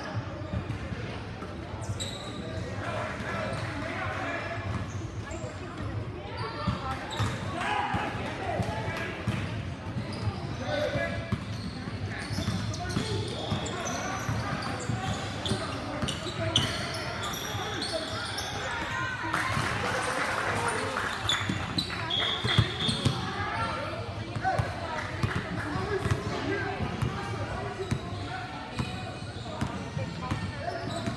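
Indoor basketball game: a basketball bouncing on the court amid indistinct shouts and chatter from players and spectators, echoing in a large gym.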